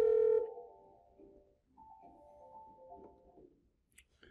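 Ringback tone from a Grandstream GXP1625 IP desk phone's speakerphone, steady, cutting off about half a second in. It is followed by a faint musical ringtone from a softphone ringing in the background, a short run of notes heard twice. A click comes right at the end.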